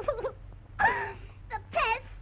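Wailing, whimpering vocal cries from a cartoon soundtrack: a held moan breaks off at the start, followed by a few short cries that bend up and down in pitch. A steady low hum from the old optical soundtrack runs underneath.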